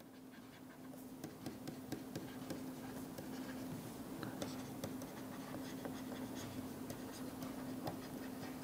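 Pen stylus writing on a tablet screen: a run of small quick taps and scratches as words are written out, over a steady low hum.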